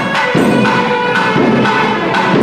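Loud temple music: a held, pitched wind melody over regular percussion strokes about three a second, with bell-like ringing.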